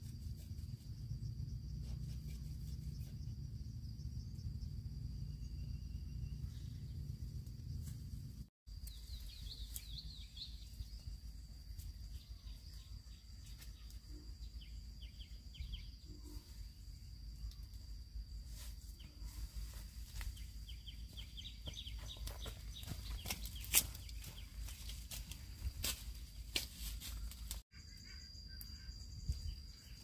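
Outdoor garden ambience: a steady high insect drone over a low wind rumble, with birds calling now and then. In the second half, rustling and sharp snaps of vegetation as weeds are pulled and cut.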